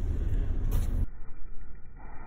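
Steady low rumble of road noise inside a moving car. About a second in it abruptly turns dull and lower, the audio slowed down for slow motion.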